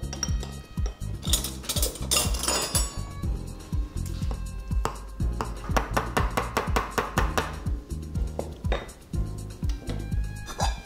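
A metal spoon stirring in a small stainless-steel saucepan, scraping and clinking against the pan again and again, stirring pasta into a thick pea cream, over background music.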